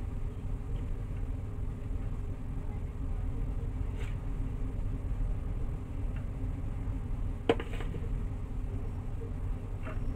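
A steady low background rumble with a few light clicks as a metal spoon taps against a plastic cake mould while crumbly grated-coconut and rice-flour mixture is spooned in. The loudest click comes about seven and a half seconds in.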